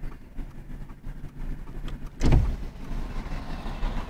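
Steady low rumble inside a stopped car's cabin, with one loud thump a little over two seconds in, after which a hiss of outside noise comes up.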